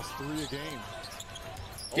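Basketball game broadcast sound at low level: a basketball dribbling on the hardwood court, with a voice faintly under it near the start.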